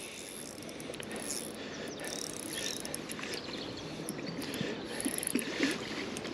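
A small spinning reel's mechanism clicking and whirring steadily while a hooked rainbow trout is played on light tackle.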